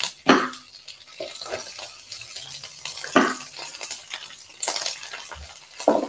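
Snow peas sizzling as they are slid from a plate into a hot electric skillet with beef, a steady frying hiss broken by a few short clattering knocks.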